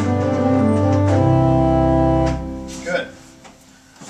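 Pipe organ playing full sustained chords over a low bass note, with the wind stabilizer's spring-loaded concussion bellows engaged. The chord is released a little over two seconds in and dies away in the room.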